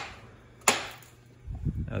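A single sharp click about two-thirds of a second in: the latch of a Honda Civic's driver's door releasing as the door is pulled open.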